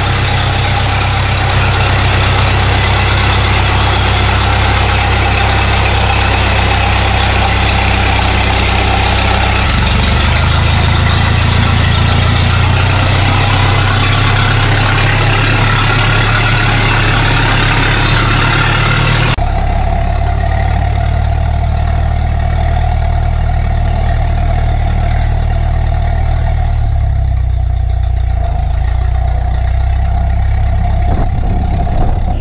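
Ford AA doodlebug's four-cylinder engine running steadily at low speed. Its tone shifts abruptly about ten and twenty seconds in.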